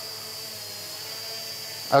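Holybro X500 quadcopter's motors and propellers humming steadily as it hovers, with a thin, steady high whine over the hum.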